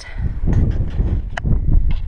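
Wind buffeting an outdoor camera microphone, a dense uneven rumble, with a sharp click about one and a half seconds in.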